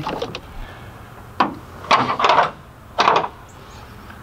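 Hand tools clicking and knocking against metal: a few short, sharp clinks, with a quick run of clicks about two seconds in.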